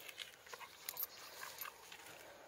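Brindle Staffordshire bull terrier tearing at and chewing long grass: faint, irregular crunching clicks.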